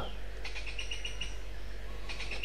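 Small bird chirping a quick run of short high notes about half a second in, over a steady low hum.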